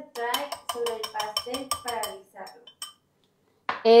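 A utensil clinking quickly against a bowl as something is stirred: about five light ringing clicks a second for roughly three seconds, then stopping.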